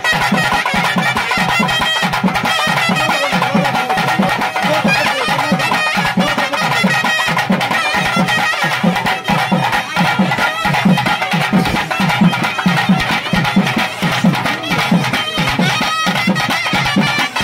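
Loud traditional folk music: a pitched melody line over fast, steady drumming.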